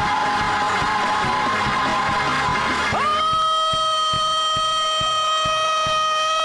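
Slowed-down, chopped-and-screwed gospel praise-break music with a steady drum beat. About halfway through, a voice breaks in with one long held note.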